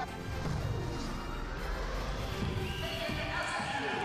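TV sports-broadcast intro music, with swooshing sound effects and low thuds under the sustained tones.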